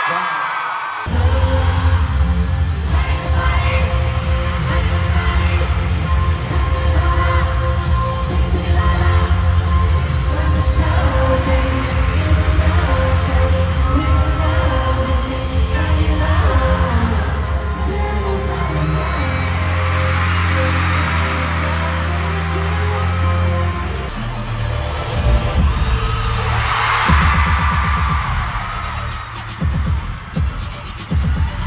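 Live K-pop concert music over an arena sound system, recorded from the crowd: a pop track with heavy bass and singing starts abruptly about a second in, and the beat shifts near the end.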